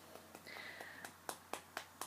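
Fingertips lightly tapping on the outer edge of a hand for EFT tapping: faint, quick, repeated taps.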